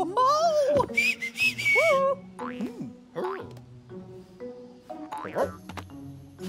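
Cartoon soundtrack: wordless character vocalizations gliding up and down in pitch over soft background music. A short hiss comes about a second in.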